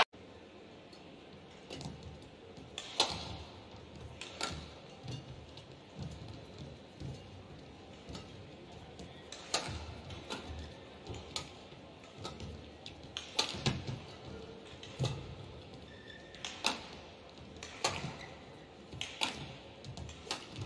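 Badminton racket strikes on a shuttlecock during professional singles rallies: sharp single cracks, a few in the first seconds, then a quicker run of hits from about ten seconds in, over a steady low hum of the arena.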